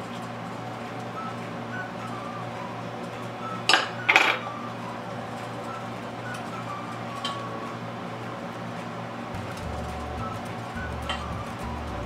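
Silicone spatula stirring gravy in a stainless steel pot, knocking against the pot twice in quick succession about four seconds in, with a few faint ticks later. Soft background music runs underneath.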